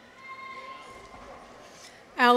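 Faint, distant audience cheering: a person's long, high drawn-out call, held for about a second, over soft crowd noise.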